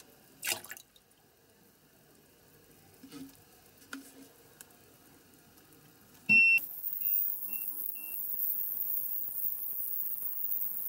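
Ultrasonic cleaner with parts in its stainless tank being switched on: a click and one beep, then three short beeps, after which its steady high hiss begins as the bath runs. Before that, a few faint knocks, the clearest about half a second in.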